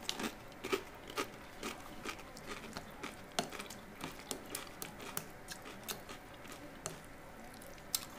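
Quiet, irregular crunches and small clicks: a tortilla chip being chewed, and a plastic spoon stirring chunky fresh salsa in a glass bowl.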